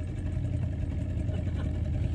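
Small motorboat's engine running steadily, a continuous low drone with no change in pitch.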